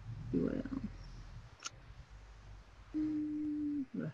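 A person's wordless voice sounds: a short murmur about half a second in, then a steady held hum for about a second near the end that dips at its close. A single sharp click comes between them.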